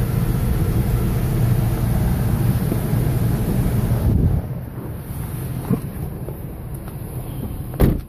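A steady low rumble inside the SUV's cabin that drops away abruptly about four seconds in. Quieter rustling follows, and a single sharp knock comes just before the end.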